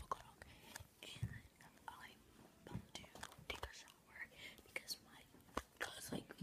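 Faint whispering, with scattered small clicks and rustles of handling.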